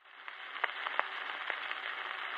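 Surface noise of a 78 rpm shellac disc with no music: a steady hiss with a handful of sharp clicks at uneven intervals.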